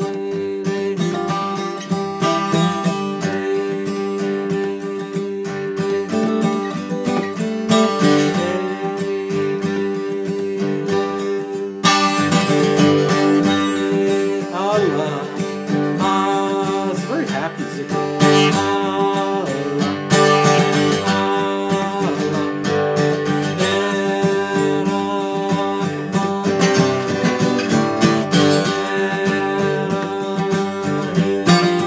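Acoustic guitar in open tuning, strummed steadily in G Mixolydian, with a man's voice singing a Sufi zikr chant over it; the playing grows louder about twelve seconds in.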